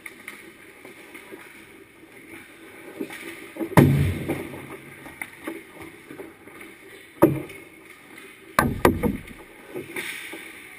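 Ice hockey play at the goal: a loud thud with a short ringing decay about four seconds in, a sharp knock near seven seconds and a quick run of knocks near nine, typical of pucks, sticks and skates striking the goal and pads. Under it runs a steady hiss of skates on ice.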